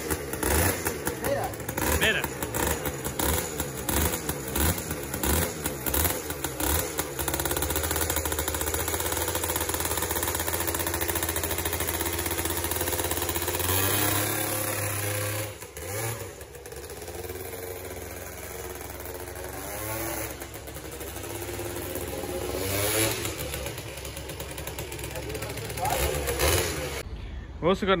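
Malossi-kitted 125cc two-stroke Yamaha BWS scooter engine with an expansion-chamber exhaust, running just after startup. It is blipped in short uneven revs for the first several seconds, then runs steadily, drops back and rises again briefly later on. The sound cuts off about a second before the end.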